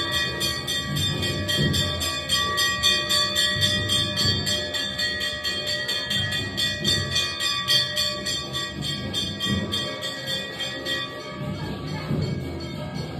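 Brass temple bells rung continuously for aarati, with steady ringing tones over a fast, even clanging of about six strokes a second. Irregular low thumps run beneath.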